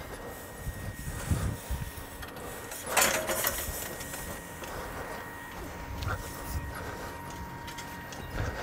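A wheeled metal lawn leveller being pushed through topdressing sand, its frame scraping and dragging the sand across the lawn, with one louder scrape about three seconds in.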